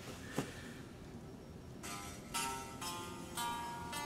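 Unplugged DIY Telecaster-style kit electric guitar, a capo on the third fret, strummed about five times, roughly twice a second, starting about two seconds in, after a short click. It is a test of whether the capo gets round a bent neck that makes the lowest frets sound bad, and it does not cure it.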